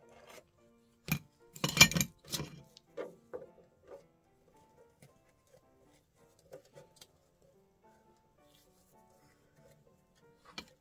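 Soft background music plays throughout. About a second in, a hot glue gun is set down with a loud clatter onto a hard plate, followed by a few lighter knocks and taps.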